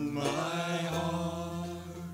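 Small acoustic band playing: mandolin and guitars with a man singing long held notes.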